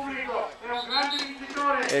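A man speaking, with short phrases and brief pauses; speech only.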